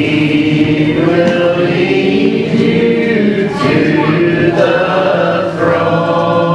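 A church congregation singing together, a group of voices holding long drawn-out notes and sliding between them.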